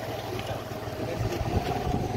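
Small two-wheeler engine running steadily as the bike is ridden, a continuous even hum with road noise.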